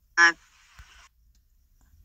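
A single short spoken "uh", then near silence with only a faint hiss and a tiny click.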